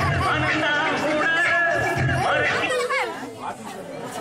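Several people's voices talking and calling out over one another, with music behind them; the voices thin out about three seconds in.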